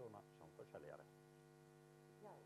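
Near silence with a steady electrical mains hum, a low buzz with many evenly spaced overtones, from the sound system. Faint, distant voices are heard during the first second, then only the hum remains.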